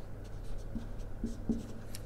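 Marker pen writing on a whiteboard: a few short scratchy strokes as a small label is written.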